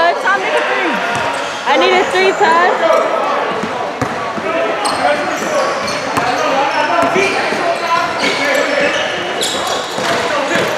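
Indoor basketball play: a basketball bouncing on the court, sneakers squeaking, and players' and onlookers' voices calling out.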